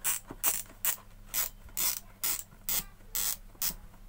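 The plastic temperature-control knob of a Wipro Super Deluxe dry iron being twisted back and forth as it is fitted, giving a short rasping click about twice a second, nine in all.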